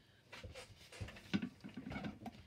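Sheets of folded A4 paper being handled and opened out on a table: several soft rustles and crinkles, in small clusters about half a second and a second and a half in.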